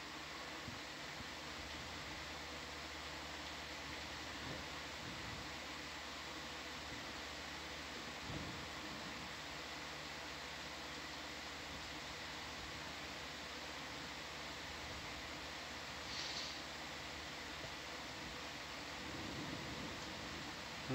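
Steady low hiss with a faint electrical hum, the background tone of the dive's audio feed. A faint short sound comes about eight seconds in and another near sixteen seconds.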